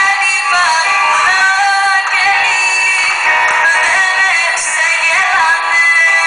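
A woman singing a Greek song into a microphone, with a small live band accompanying her. Her voice carries a gliding, ornamented melody over steady instrumental tones.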